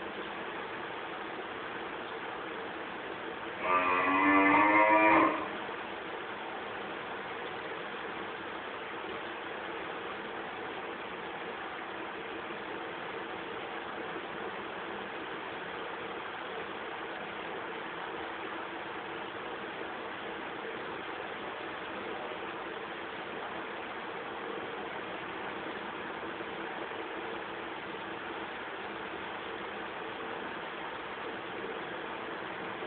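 Steady hiss, broken a few seconds in by one loud, drawn-out pitched call about a second and a half long, with a slightly wavering pitch.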